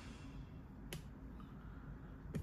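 A single sharp click about a second in, followed shortly by a much fainter tick, over a low steady background rumble.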